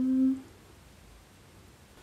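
A woman's voice holding a steady hum for about half a second, then near silence: room tone.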